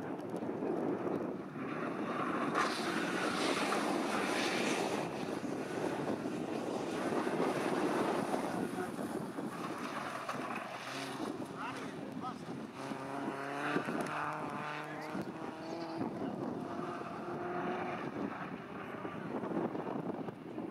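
Engines of BMW cup race cars running as the cars drive through a coned sprint course, heard from trackside, with people talking partway through.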